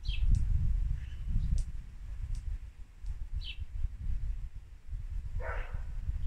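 Outdoor garden ambience: a few short, falling bird chirps and one longer call near the end, over a loud, uneven low rumble of the kind wind makes on a microphone.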